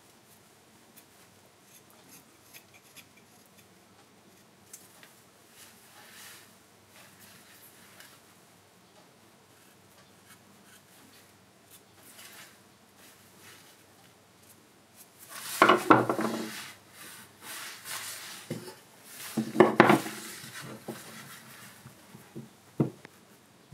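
A hand chisel pares thin shavings from a wooden spoon handle, giving faint, scattered scraping cuts. Later come two louder bouts of rough wood scraping, each about a second long and a few seconds apart.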